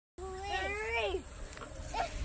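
A person's drawn-out squeal, about a second long, its pitch rising a little and then dropping away at the end, with a short upward yelp near the end, over a low rumble on the microphone.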